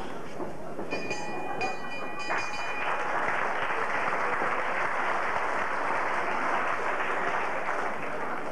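Boxing ring bell rung about three times, signalling the end of the round, followed by applause and crowd noise from the hall.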